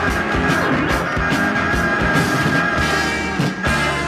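A rock band playing an instrumental passage between sung verses, with sustained chords over a steady drum beat.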